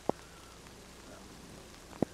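Quiet outdoor background: a faint, steady hiss, with one short sharp click just after the start and another at the very end.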